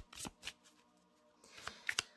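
Oracle card deck shuffled by hand: a few quick card slaps and flicks, a short lull in the middle, then more shuffling near the end.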